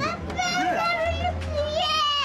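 A child's high voice calling "Papa" and talking, over a steady low hum.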